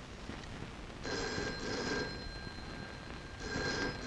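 Telephone ringing: two rings, each about a second long, the first about a second in and the second near the end.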